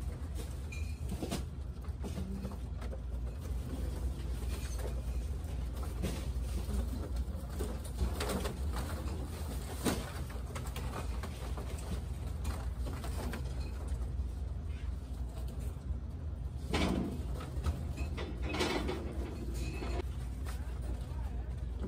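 Foil balloons rustling and crinkling in short bursts as they are pulled and handled by their ribbons, over a steady low hum.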